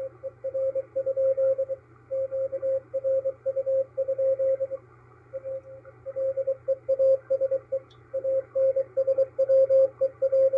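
Morse code from coast station KPH heard through a MALAHITEAM DSP-2 shortwave SDR receiver: a single mid-pitched tone keyed in quick dots and dashes over band hiss and a low hum. It sends the station's list of listening bands and a call asking ships for weather observations, AMVER reports and traffic ('OBS? AMVER? QRU? PLEASE ANSW…').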